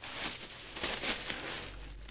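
Thin plastic shopping bag rustling and crinkling as it is lifted and opened by hand.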